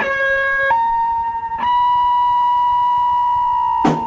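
A steady, high pitched electronic tone that steps up in pitch twice in the first two seconds and then holds with a slight downward drift, like a siren, on a lo-fi boom box recording. Drum hits come in just before the end.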